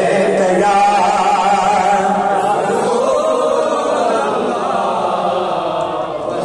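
A man's unaccompanied voice singing a naat (Urdu devotional poem) into a microphone, holding long, wavering notes.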